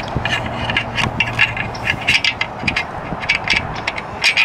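Metal mounting hardware being worked through a steel bike-rack bracket on a roof rack crossbar: a run of irregular metal scrapes and small clicks, over a low steady hum.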